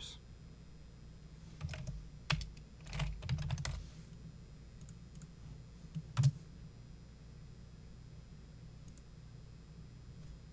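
Computer keyboard and mouse in use: a quick run of keystrokes between about one and a half and four seconds in, then two sharper clicks about six seconds in.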